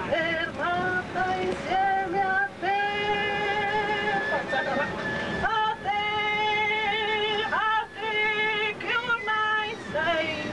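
A solo voice singing unaccompanied, holding long notes with vibrato and sliding up into several of them.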